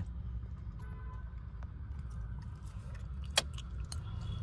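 Mahindra Bolero SLX diesel engine idling steadily, heard from inside the cabin, with a few light clicks and one sharper click about three and a half seconds in.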